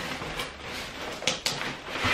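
Cardboard delivery box being handled and pulled open: rough scraping and rustling of cardboard, with a few sharp crackles.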